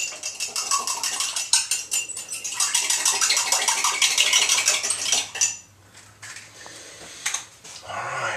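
A spoon stirring drink powder into a glass of water, clinking rapidly against the glass for about five and a half seconds, then a few fainter knocks.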